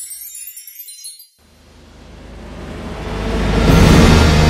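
Sparkly, chime-like tinkling from a logo intro fades out in the first second or so. After a brief gap, a swelling riser builds steadily louder toward the logo reveal near the end.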